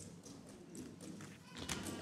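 Faint room noise with a low hum and a few scattered light knocks or shuffles, the clearest knock near the end.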